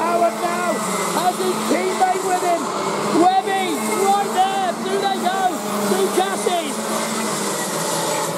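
A pack of Rotax Max 125 single-cylinder two-stroke kart engines racing past, several overlapping high-pitched engine notes rising and falling again and again as the karts accelerate and lift off through the corners.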